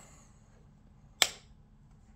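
A single sharp switch click about a second in as the battery power to the amplifier is turned off, over faint room tone.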